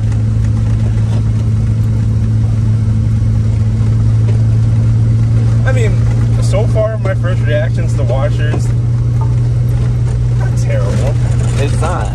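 BMW Z3 cruising at a steady speed, its engine giving a constant low drone under wind and road noise through the open top.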